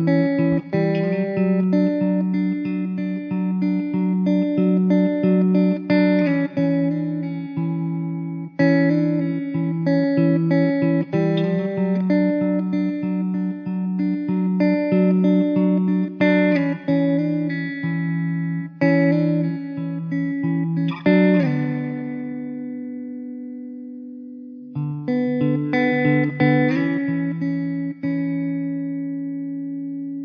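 Background music: a plucked guitar picking a repeating pattern over held chords. About two-thirds of the way in, one chord is left to ring and fade for a few seconds, then the picking starts again.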